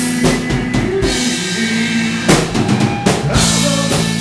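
Live rock band in an instrumental stretch with no singing: the drum kit is to the fore, with cymbal wash and heavy hits over sustained electric guitar chords.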